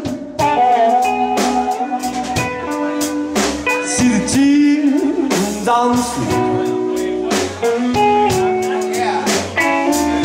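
Live slow blues band: a harmonica played into a hand-held microphone, with held notes that bend in pitch, over electric guitar, electric bass and a drum kit keeping a slow beat.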